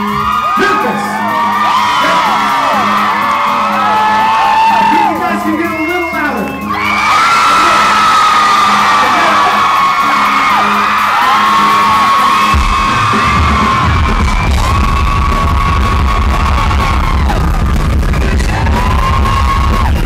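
Live rock concert in a club: fans scream and whoop over a sung male lead vocal for the first several seconds, then the vocal carries long held notes, and bass and drums come in with a steady beat about twelve seconds in.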